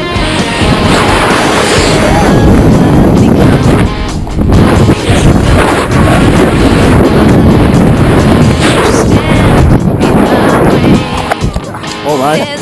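Loud wind noise buffeting an action camera's microphone during a parachute landing, with rock music faintly underneath. It drops out briefly twice and eases near the end.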